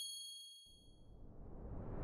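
Bright electronic chime of a logo sting ringing out and fading away, then a whoosh that swells up steadily toward the end.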